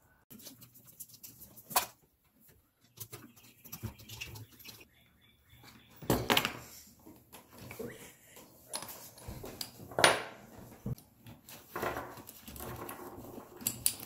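Handling noises from taking apart a small air compressor's metal pump head: screws and metal parts clinking and scraping, with a few sharp clicks and knocks along the way.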